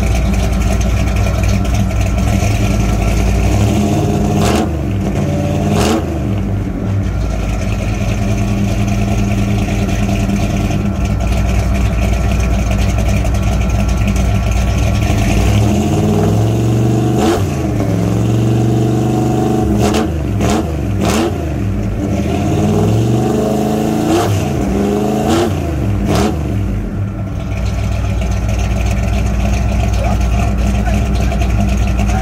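1972 Ford pickup's engine idling through its exhaust, blipped up and back down several times: two short revs a few seconds in, a longer rev past the middle, and a run of quick blips near the end.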